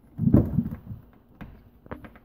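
A hand fitting a small metal shelf clip into a drilled hole in a wooden cabinet side: a dull bump and rub about a quarter second in, then two small sharp clicks about half a second apart.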